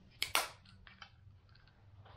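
Suunto MC-2 mirror compass lid folded shut: two sharp plastic clicks close together, the second louder, followed by a few faint handling ticks.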